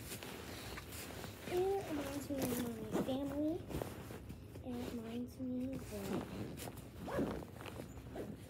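A zipper on a fabric bag being worked and the fabric rustling as it is handled during packing, with a girl's voice making short, wavering pitched phrases without clear words over it.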